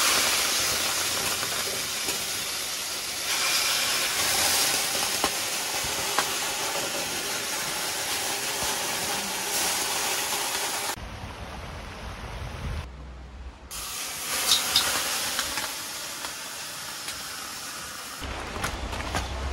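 Water ladled onto the hot rocks of a tent-sauna stove, hissing into steam. The hiss changes about eleven seconds in, drops out briefly, then comes back with a few small crackles.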